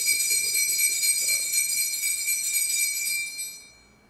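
Altar bells, a cluster of small sanctus bells, shaken in a continuous high-pitched jingle to mark the elevation of the chalice at the consecration. The jingle dies away near the end, leaving one tone ringing out briefly.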